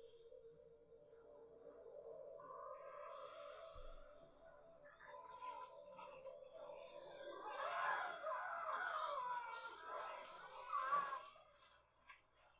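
Faint horror-film soundtrack music: a steady held drone, with a rising tone about two seconds in and busier wavering tones from about seven seconds in.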